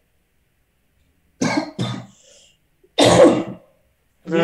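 A person coughing over an online call: two short coughs a little over a second in, then a longer, louder cough near the end.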